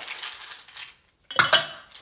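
Ice cubes clattering against each other and the bowl as a hand scoops them up, with a louder, sharper clatter of cubes a little past the middle.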